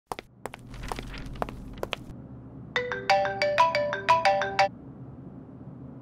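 Mobile phone ringtone: a quick melodic run of short electronic notes lasting about two seconds, starting about three seconds in. A few sharp clicks come before it.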